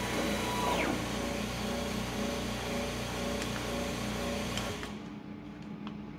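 A steady rushing hiss with a low hum, from the vacuum pump holding down the CNC router's vacuum table, cuts off suddenly about five seconds in. A brief high whine sounds in the first second, and background music plays throughout.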